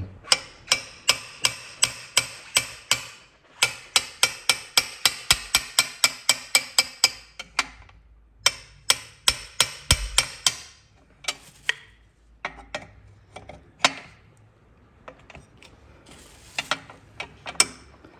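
Ratcheting spanner clicking as it is swung back and forth on the 22 mm nut of an exhaust O2 sensor, undoing it. The clicks come in quick runs of about four a second with short breaks, then thin out to scattered single clicks in the second half.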